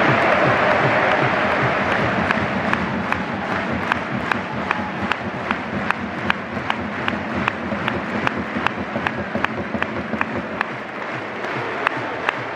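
Football stadium crowd applauding and cheering, loudest at first. From about two seconds in a steady beat of about three sharp strokes a second runs under the crowd noise.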